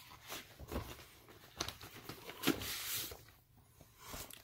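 Cardboard gatefold LP jacket being handled and a paper inner sleeve drawn out of it: faint rustling with a few light taps, and a longer scraping rustle about two and a half seconds in.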